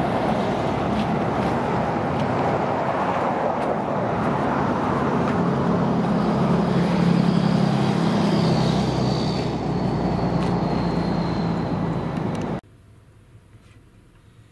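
Road traffic passing close by: a motor vehicle's engine and tyres, loudest about seven seconds in, with a faint high whine. The sound cuts off suddenly near the end.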